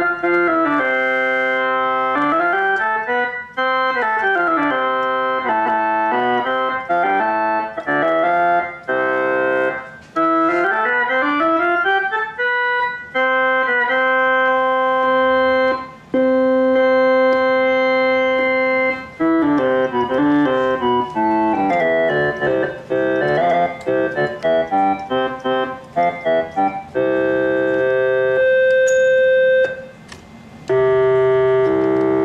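Hammond Solovox, a 1940s vacuum-tube keyboard instrument, playing one note at a time. It runs stepwise up and down the scale and holds long notes, and its tone colour shifts from passage to passage as different tone and register tabs are used.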